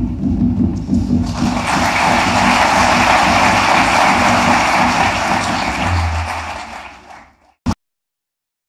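Audience applauding, swelling over the first second or so, then fading out near the end, followed by a single brief click.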